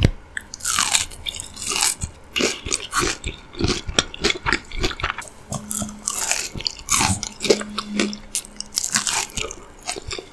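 Close-miked eating: a person biting into and chewing a crisp golden fried piece of food, a busy run of crunches and crackles with wet chewing between them.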